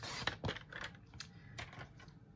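Light plastic clicks and paper rustling as an envelope is slid onto a paper trimmer and the trimmer's clear arm is moved into place. A quick cluster of clicks comes right at the start, then single clicks every half second or so.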